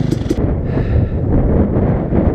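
Dirt bike engine running, breaking off abruptly a moment in; after that, wind buffeting the helmet camera's microphone as a loud low rumble.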